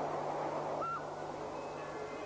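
Rhaetian Railway passenger train rolling past, a steady rushing rumble that slowly fades. About a second in comes one short, high, hoot-like tone.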